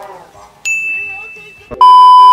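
Edited-in sound effects: a bright single ding about half a second in that rings and fades, then near the end a loud, steady, single-pitched beep, the classic TV test-pattern tone that goes with colour bars.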